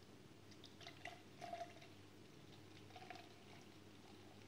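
Home-brewed pale ale poured from a glass bottle into a tall glass, heard faintly, with a few slightly louder glugs along the way.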